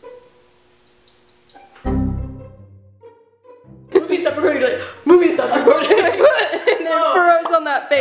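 Background music with low bowed-string and bass notes; about two seconds in a deep bass note sounds and fades. From about four seconds a person's voice takes over loudly, overlapping the music.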